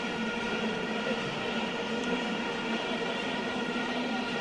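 Football stadium crowd noise carrying a steady drone of many horns blown at once.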